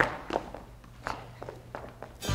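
Footsteps of people walking away, about four steps, the first the loudest, over a low room hum.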